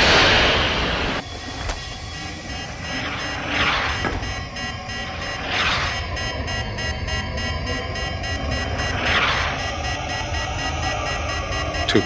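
Science-fiction photon torpedo launch effect: a loud whoosh right at the start lasting about a second. It is followed by a dramatic orchestral film score, with several more rushing whooshes as the torpedo flies toward its target.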